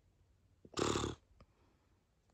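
A woman's short, breathy vocal sound, like a rough sigh or exhale, about a second in and lasting about half a second.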